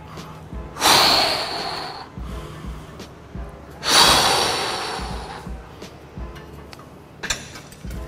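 A person exhaling forcefully twice during a cable exercise hold, each breath a breathy hiss that fades over a second or so, about three seconds apart, over faint background music.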